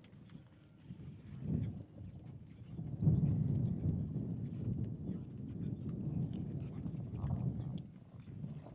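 Wind buffeting an outdoor microphone: an uneven low rumble that swells briefly, then grows louder about three seconds in and keeps on, with a few faint clicks over it.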